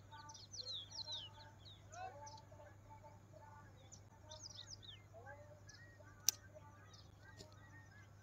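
Faint birdsong: several birds chirping with quick, high, falling notes, with one sharp click about six seconds in.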